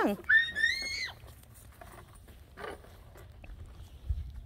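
A young child's short, high-pitched squeal lasting under a second, rising then holding; after it, low wind rumble on the microphone.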